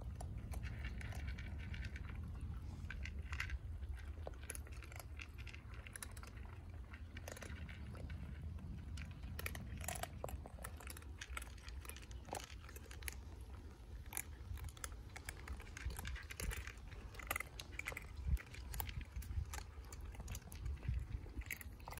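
Several cats and kittens crunching dry kibble: many quick, irregular crunches and clicks of chewing, over a low steady rumble.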